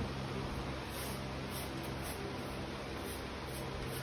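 Faint, repeated rustling strokes of a handsaw blade drawn through a dog's thick, long coat, over a steady low hum.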